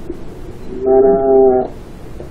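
A single steady pitched tone held for about a second, starting about a third of the way in, over a constant background hiss.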